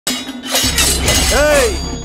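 Glass shattering as a sharp, noisy crash over a low bass drone, followed near the end by a short voice rising and falling in pitch.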